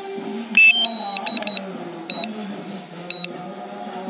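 About six short, high electronic beeps at irregular spacing, the first and loudest about half a second in, over a steady low hum.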